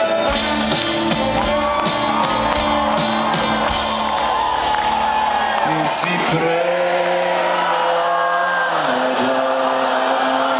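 Live band with acoustic guitar, violin, bass and drums playing, heard from inside the crowd; the drum hits stop about six seconds in, leaving held chords, with crowd voices whooping over the music.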